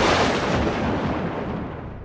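A sudden boom sound effect, like a thunderclap or explosion, that rumbles and fades away over about two seconds.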